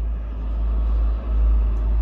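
Low engine rumble of a motor vehicle close by, heard from inside a car, swelling a little past the middle.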